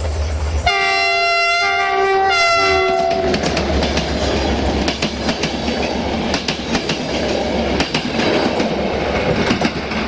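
CFR Class 64 diesel locomotive sounding its multi-tone horn about a second in, two blasts over some two and a half seconds, as it passes close by. Then its passenger coaches roll past with a steady rumble and wheels clicking over the rail joints.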